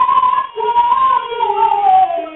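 Rajasthani folk song: a long melody note held and wavering in pitch, sliding down near the end, over a second, lower melodic line.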